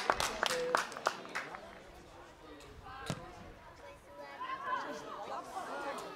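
Field sound of an amateur football match: a run of sharp knocks dies away in the first second and a half, a single ball kick comes about three seconds in, and then players and spectators shout as the ball comes into the box.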